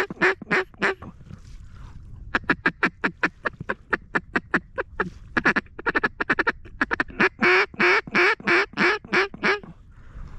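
Hand-blown mallard duck call sounded close by in quick runs of quacks, about five or six a second: a short run, a pause, a softer faster series, then a long loud run, calling to ducks flying over the decoys.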